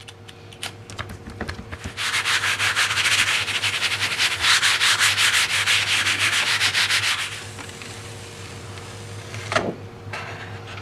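A baren rubbed briskly back and forth over a sheet of printmaking paper laid on an inked gel printing plate, a dense scrubbing hiss of rapid strokes lasting about five seconds, pressing the paint through onto the paper to pull a monoprint. Light paper rustles and taps come before it as the sheet is laid down.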